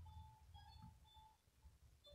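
Near silence: room tone with faint short high notes in the background.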